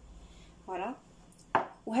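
A stemmed glass dessert cup set down on a kitchen worktop: one sharp knock with a short ring about one and a half seconds in, after a brief vocal sound.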